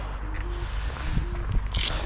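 Movement and handling noise over a low rumble, then a short crinkle near the end as gloved hands get into a clear plastic bag of bolts.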